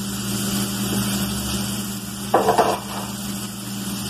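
Chopped onion and garlic frying in oil in a pot, a steady sizzle over a low steady hum, with a brief clatter about two and a half seconds in.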